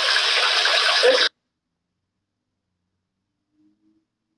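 A steady hiss runs for just over a second, then the sound cuts off abruptly into dead silence for about three seconds: the audio drops out.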